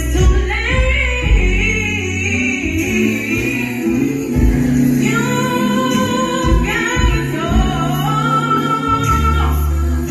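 A woman singing live into a microphone over loud amplified backing music with deep, held bass notes.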